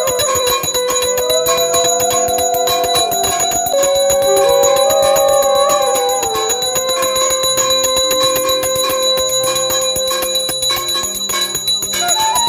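Brass puja hand bell rung continuously with rapid, even strikes, over devotional music carrying a sustained gliding melody.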